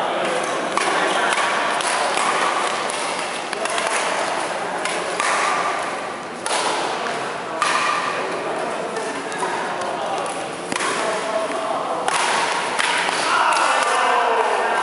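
Badminton rally in a large echoing hall: a string of sharp racket hits on the shuttlecock, with players' shoes moving on the wooden court floor.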